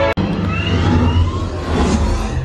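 Simulator ride soundtrack: a deep steady rumble with thin rising whistling tones over it, starting right after a sudden cut.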